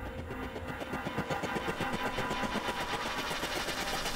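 A fast, even rhythmic clatter, about eight beats a second, with a faint steady tone under it.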